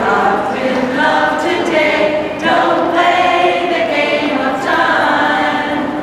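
A choir of mixed women's and men's voices singing together in slow, long held notes, phrase after phrase.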